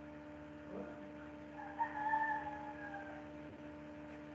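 Steady electrical hum, with one drawn-out pitched call lasting about a second and a half and slowly falling in pitch near the middle.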